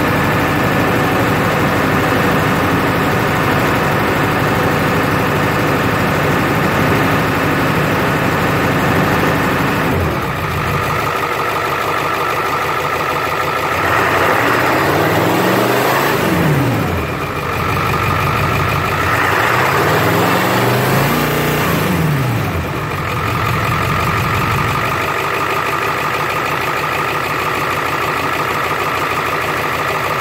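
Ford 7.3L Power Stroke V8 turbodiesel idling shortly after a cold start, revved up and back down twice in the middle, with a faint high whistle rising and falling with each rev, then settling back to a steady idle.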